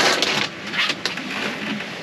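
A plastic popcorn bag crinkling as it is handled and set down, loudest in the first half second, then quieter rustling and handling noise.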